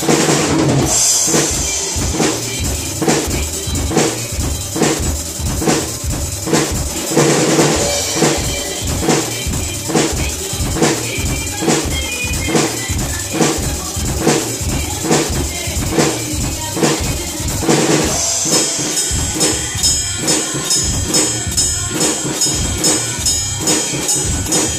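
PDP drum kit with Sabian and Paiste cymbals played to a steady rock beat, kick and snare strokes evenly spaced, along with the song's playback. About three-quarters of the way in, a fast, high, even ticking pattern joins the beat.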